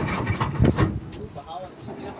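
A boat's motor running with a steady low rumble, then cut off about a second in as the boat coasts in to the river bank. A couple of knocks come just before it cuts.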